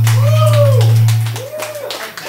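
A loud held deep bass note from the backing track fades out about a second and a half in, with two drawn-out vocal calls over it, each rising and falling. Scattered clapping starts near the end.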